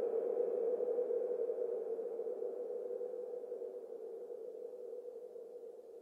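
Sustained synthesizer drone holding one low-mid pitch with no beat, fading out steadily: the closing tail of the techno track.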